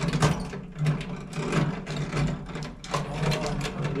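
Hand-cranked Mutoscope viewer running, its reel of picture cards flicking past in a fast, continuous clatter over a low steady hum.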